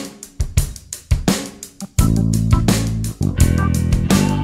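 Instrumental funk backing track in A minor: a short drum-kit break of kick, snare and hi-hat with the bass dropped out, then the bass and guitar come back in with the full groove about halfway through.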